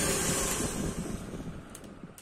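Hand-held hair dryer blowing a steady rush of air, fading away over the second half as it winds down, with a light click near the end.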